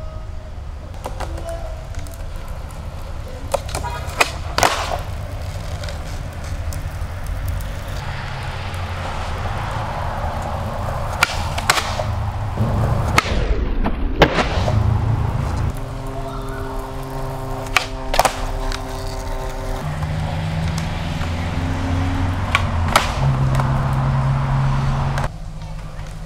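Skateboard wheels rolling on rough flat pavement, with several sharp clacks, often in close pairs, as the board's tail pops and the board lands during flatground tricks. Music with a bass line plays underneath.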